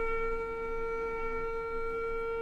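Solo cello bowing a single long high note, held steady without a break.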